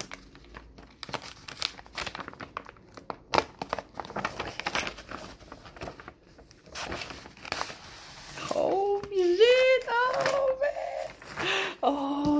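A paper ream wrapper being crinkled and torn open by hand in a run of short rustles and rips. About two-thirds of the way through, a man's voice makes a wordless sound.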